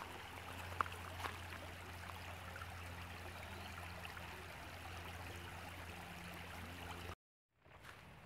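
Shallow creek water running over a stony riffle, a steady babbling with a constant low hum under it. The sound cuts off suddenly near the end and comes back faintly.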